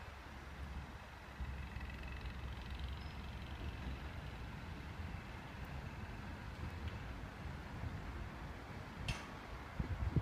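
Faint, steady low rumble of an approaching High Speed Train hauled by class 43 power cars, still some way off. A brief sharp sound comes about a second before the end.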